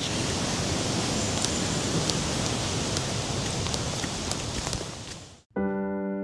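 Steady rushing of fast-flowing water from a river and waterfall, fading out about five seconds in. A piano tune starts just before the end.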